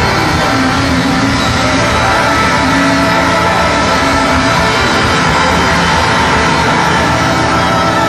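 A live band playing a song at full volume through a club PA, dense and continuous.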